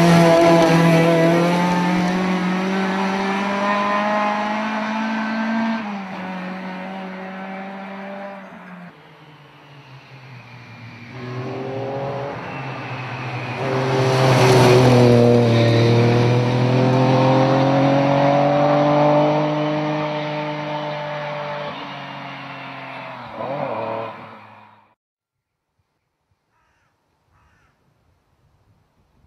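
Two rally cars driving past at speed on a gravel stage, one after the other: the first is loud at the start and fades away after a gear change, then the second approaches, is loudest as it passes with its engine revving up and down through the gears, and fades out. The sound stops suddenly near the end.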